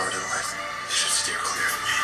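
Movie trailer soundtrack playing from a laptop speaker: dialogue over background music.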